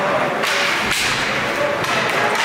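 Two sharp knocks from ice hockey play near the rink boards, about half a second apart, the second one heavier with a low thud, over steady rink noise.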